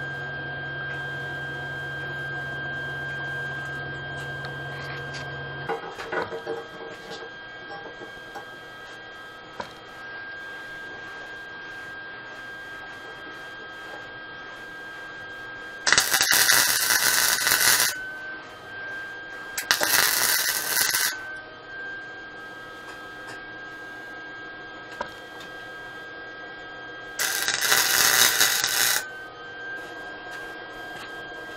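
Arc welder tacking the steel tube frame of a mini bike together: three short welds of about one and a half to two seconds each, the first two close together about halfway through and the third near the end.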